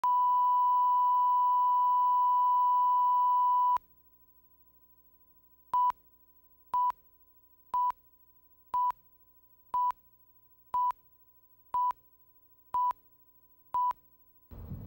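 Broadcast line-up tone over colour bars: one steady, pure high tone for nearly four seconds that stops suddenly. After about two seconds of silence, a countdown leader beeps once a second at the same pitch, nine short beeps in all.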